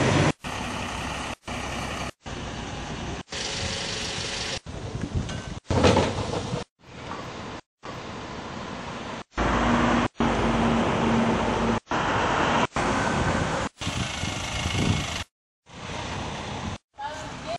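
Street traffic with small trucks passing, heard as about fourteen short clips of a second or so each, spliced together and cut off abruptly with brief gaps of silence between. A steady engine hum runs through one of the louder stretches past the middle.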